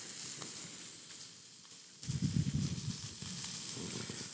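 Steady sizzling of an egg frying without oil in a hot nonstick skillet, with a low, muffled noise about halfway through.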